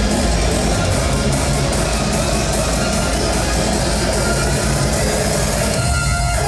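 Loud live electronic dance music from a DJ set played over a large venue sound system, with a heavy steady bass, recorded on a phone inside the hall.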